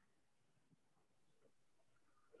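Near silence: faint room tone from the call.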